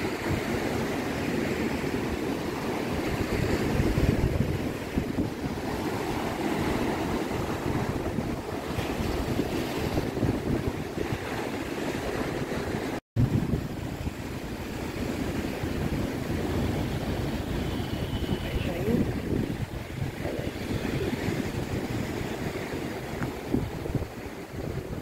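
Sea waves breaking and washing up on a sandy beach, with wind blowing across the microphone. The sound cuts out for an instant about halfway through.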